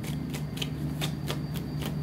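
A tarot deck being shuffled by hand, cards slipping and flicking against each other in a quick, even run of soft clicks, about six a second.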